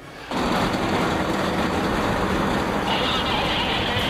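Engine of a wheeled armoured personnel carrier running steadily at close range, a dense low rumble, with a higher hiss joining about three seconds in.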